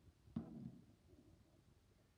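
Near silence, broken once about a third of a second in by a brief knock as the toy car and wire-mesh cover are handled on the plastic bin lid.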